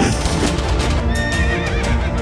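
A horse whinnying and hooves clattering over a music soundtrack; the wavering whinny comes about a second in.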